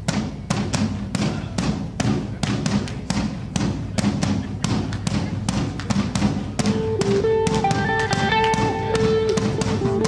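Live worship band starting a song's intro: electric guitar and bass guitar over a steady beat of sharp hits, about three to four a second. A held melody line comes in about six and a half seconds in.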